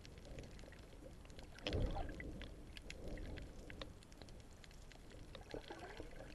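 Underwater sound picked up by a submerged camera: a scatter of faint clicks and crackles with low gurgling swishes of moving water, the loudest swish about two seconds in.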